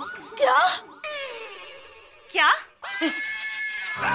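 Two shocked, shouted cries of "Kya?!" ("What?!"), the first about half a second in and the second past the two-second mark. A long falling tone sounds between them, and a steady high chord starts near the end as a dramatic music sting.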